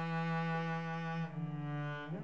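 Solo bowed cello playing one long sustained note, which moves down to a lower note about a second and a half in.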